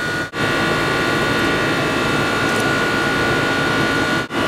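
Fixed-orifice central air conditioner running: a steady rushing noise with a faint, steady high whine. A brief dropout comes near the start.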